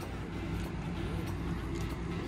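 Steady low mechanical hum in the background, with a faint voice now and then.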